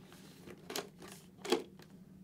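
Two faint short clicks, about three-quarters of a second apart, from the Scorpion EXO-ST1400 helmet's plastic drop-down sun visor as its clips are pushed back over their mounting posts.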